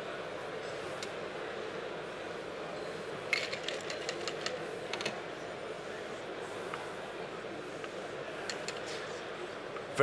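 Steady background hubbub of a busy hall, with a cluster of light clinks from bar tools and glassware about three to five seconds in, and a few single clinks elsewhere.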